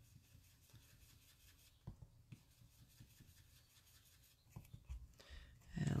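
Faint rubbing of an ink blending brush swirled across cardstock, with a few light taps.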